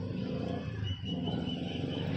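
A low, steady engine rumble, like a motor vehicle running nearby, with a thin steady high tone joining about a second in.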